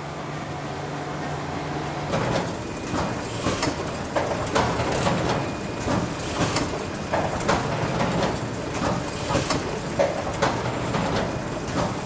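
Book-binding machinery running: a steady hum, then from about two seconds in a run of repeated clacks and knocks from its moving parts.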